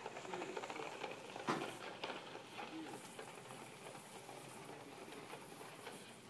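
Small plastic wheels of a toy shopping cart rolling and rattling over a hard store floor, with a louder knock about a second and a half in. Faint voices underneath.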